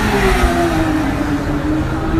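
Porsche 911 race car's flat-six engine running hard as it goes past on the track, its note falling steadily in pitch as it moves away.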